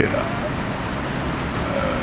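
Steady, even background hiss in the gap between spoken phrases.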